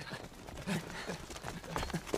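Footfalls of a group of people running on a grassy dirt path, a quick uneven patter of thuds, with short voiced sounds from the runners mixed in.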